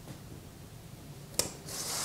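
Faint handling of a plastic ruler and ballpoint pen on a cardboard pattern: a light click about three-quarters of the way through, then a short scraping rub across the cardboard near the end.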